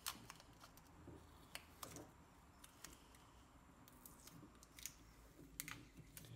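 Faint, scattered clicks and taps of a lithium-ion battery cell pack and its plastic cell holders being handled, against near silence.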